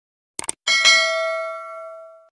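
Sound effects for a subscribe-button animation: two quick mouse clicks, then a notification-bell ding that rings out and fades over about a second and a half.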